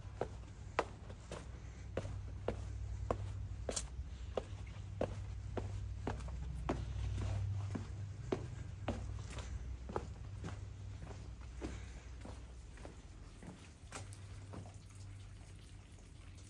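Footsteps going down stone steps and onto flagstone paving, about two steps a second, over a low rumble.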